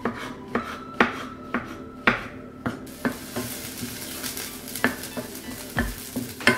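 Knife chopping mushrooms on a wooden cutting board, about two strokes a second. About three seconds in, sliced spring onions sizzle in olive oil in a non-stick frying pan over medium-high heat, stirred with a wooden spoon, with an occasional knock.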